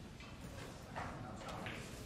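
A few soft footsteps around a snooker table, with short knocks about a second in and again near the end.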